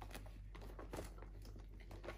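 Faint rustling and a few light clicks as hands rummage through toiletries in a zippered pouch and lift out a plastic spray bottle.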